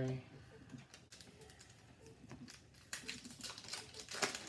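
Hands handling hockey trading cards and a foil card pack: light clicks and rustles, sparse at first, then coming thick and fast in the last second or so as a pack is worked open.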